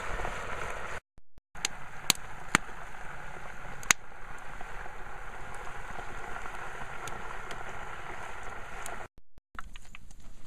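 Melted lard and bacon grease sizzling and bubbling in a cast iron pot over a wood fire as the water left in the fat boils off, with a few sharp pops in the first few seconds. The sound cuts out briefly about a second in and again near the end.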